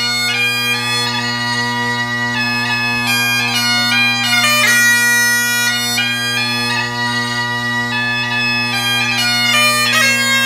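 Great Highland bagpipe playing a tune: the chanter melody steps from note to note, with quick grace-note flicks at some changes, over the unbroken drones.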